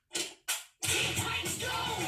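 Two quick clicks of a cartoon cassette tape player, then an upbeat theme song with singing starts about a second in, all played through a TV speaker.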